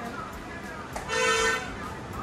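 A vehicle horn sounds once: a single steady honk of about half a second, about a second in.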